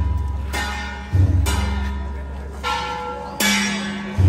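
Processional percussion of gongs and drums struck in an uneven beat, about five heavy strokes, each with a deep boom and a metallic ring that fades before the next.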